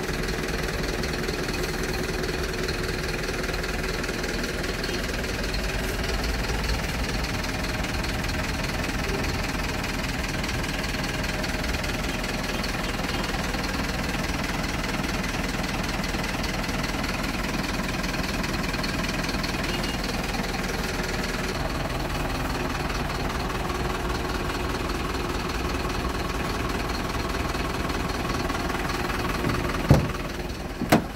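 Volvo FH tractor unit's diesel engine idling steadily, heard close up.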